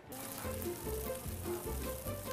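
Pork belly and makchang sizzling on a hot grill plate, a steady hiss, under background music with a regular beat.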